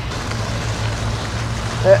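Steady outdoor background noise: an even hiss with a low, constant hum underneath and no distinct event.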